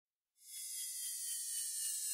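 A faint, high-pitched shimmering sparkle effect for an animated logo intro, made of several high tones drifting slightly downward. It starts about half a second in and slowly swells.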